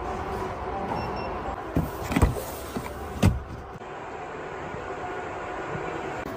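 Cadillac CT5's trunk lid opening from a key-fob press: a steady motor hum with a few sharp knocks, the hum stopping a little past halfway.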